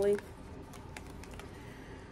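A deck of tarot cards being shuffled by hand: a soft, irregular run of small clicks as the cards slide and tap against each other.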